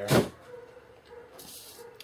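A plastic zipper bag rustling briefly as it is set down on a wooden table, with a softer crinkling hiss about three-quarters of the way in.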